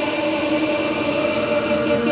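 Breakdown of a euphoric hardstyle track: sustained synth pad chords over a noise wash, with no kick drum.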